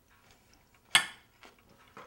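Cutlery knocking against a dish at a dinner table: one sharp clink about a second in that rings briefly, with a few faint small clicks around it.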